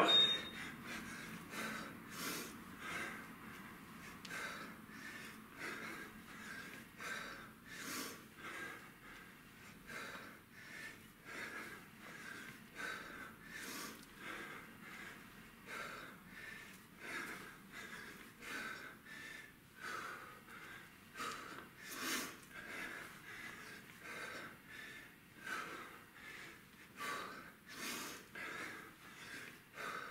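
A man's forceful, rhythmic breathing, with a sharp exhale about once a second in time with repeated kettlebell snatches.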